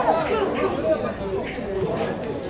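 Several people's voices talking and calling out at once, overlapping.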